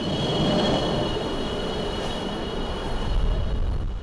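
F-22 Raptor's twin Pratt & Whitney F119 turbofan engines running on the ground: a dense, steady rumble under a high whine of several steady tones, the low rumble swelling near the end.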